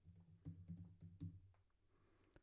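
Faint keystrokes on a computer keyboard as a password is typed: a quick scatter of light key clicks over a faint low hum that fades out after about a second and a half.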